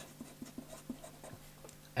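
Pen writing on paper: faint scratching with small ticks as letters are drawn by hand.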